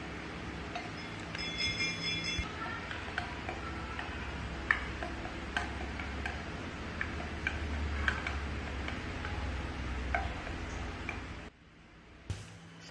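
A utensil stirring a mixture in a glass saucepan, with irregular light clicks as it knocks against the glass, over a low steady hum. About two seconds in, a short ringing tone sounds. The sound drops away shortly before the end.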